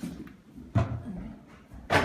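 Two footsteps on a bare subfloor with its carpet pulled up, about a second apart.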